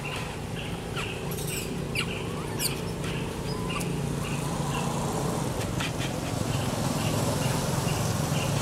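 Birds chirping: one repeats a short call about three times a second, with a few sharper high chirps in between, over a steady low background hum.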